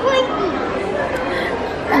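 Indistinct chatter of other people in a busy shop over a steady background hubbub.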